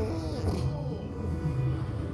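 Music from a television soundtrack, faint sustained tones playing in a room.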